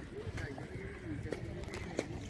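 Indistinct voices of people talking, over a steady low outdoor rumble, with a few faint clicks.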